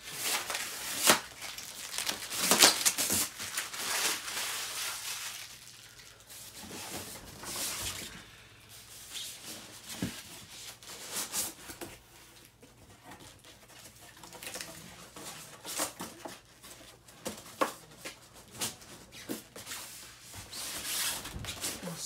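Packaging being handled: packing tape pulled off with a tearing rustle, and a cardboard sleeve and styrofoam box scraped and slid against each other in irregular bursts, busiest in the first few seconds, with scattered light taps and rubs after.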